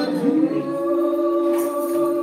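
Women singing a gospel communion song, sliding up into one long held note.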